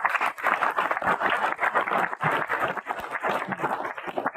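A roomful of people applauding, many hands clapping at once.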